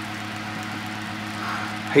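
A steady hiss with a low, steady hum beneath it.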